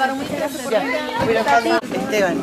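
Several people's voices talking and chattering.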